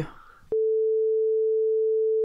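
A single steady electronic beep, one pure mid-pitched tone, cutting in sharply about half a second in after a moment of dead silence and holding at an even level. It is a tone spliced in to mark a break in the recording.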